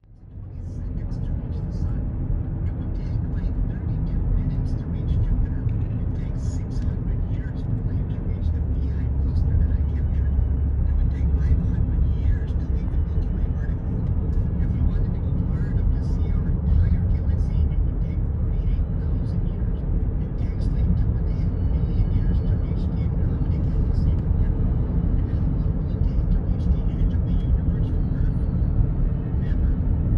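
Steady low road rumble of a car driving, heard from inside the cabin.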